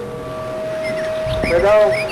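Telephone call audio through the studio line as a call connects: a steady tone, with a faint voice coming on about one and a half seconds in.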